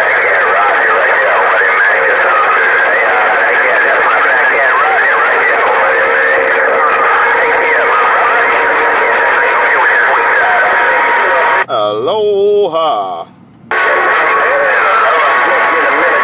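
HR2510 radio receiving on 27.085 MHz (CB channel 11): a loud, steady wash of static and many overlapping distant voices with faint steady whistles, typical of a crowded channel with skip coming in. About twelve seconds in one clearer voice breaks through, the audio briefly drops, and then the jumbled chatter returns.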